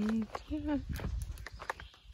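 Footsteps of a hiker and small dog on a dirt forest trail strewn with dry leaves, faint and irregular. The tail of a spoken "No" and a short voiced sound about half a second in sit over them.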